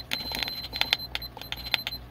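The button on a Hygger aquarium heater's control module is pressed over and over, giving a quick run of small plastic clicks, about four or five a second, as the set temperature is stepped back.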